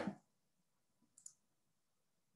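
The end of a spoken "bye", then near silence broken by two faint, quick clicks a little over a second in.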